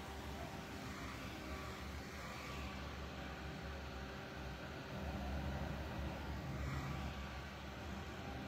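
Small handheld battery fan running close to the microphone: a steady low hum with an even hiss, a little louder from about five seconds in.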